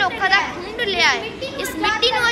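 A child's voice speaking.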